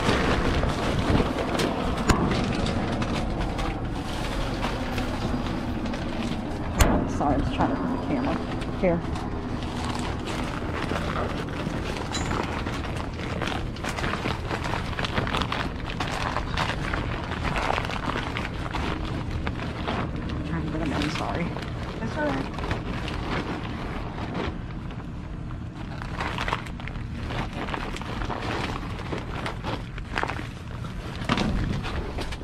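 Plastic snack packaging crinkling and cardboard boxes being shifted while rummaging through trash inside a dumpster, many short irregular rustles and knocks. A steady low hum runs underneath.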